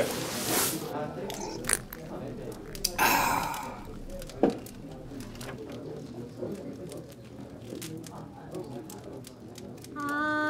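A person sighing: a breathy exhale about three seconds in, after a short breathy burst right at the start, with faint scattered clicks over low background noise.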